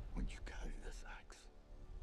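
A voice speaking low and breathy, close to a whisper, over faint music for about a second and a half, then a brief lull.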